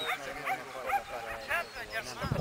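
A dog yipping in a quick string of short, high-pitched barks, about three a second.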